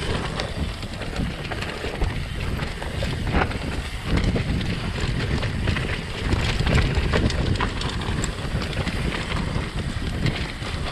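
Mountain bike rolling fast down a dirt singletrack: wind buffeting the microphone over the rumble of the tyres, with frequent clicks, knocks and rattles from the bike, which is creaky.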